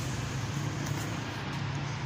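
Street traffic: a motor vehicle's engine running steadily with a low hum over general road noise.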